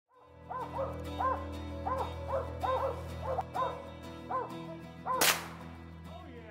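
Mountain Cur dogs barking steadily, about two to three barks a second: treeing barks at a squirrel up a tree. A low steady hum runs underneath, and a sharp whoosh cuts in about five seconds in.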